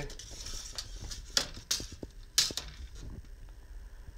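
Steel tape measure being handled while measuring: a short rasp near the start as the blade is drawn out, then a few sharp, irregular clicks and taps of the blade and case against the wooden crib rail.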